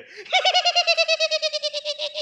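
A man's high, warbling vocal trill, pulsing about ten times a second and slowly dropping in pitch. It starts a moment in and lasts about two seconds, a comic giggling noise.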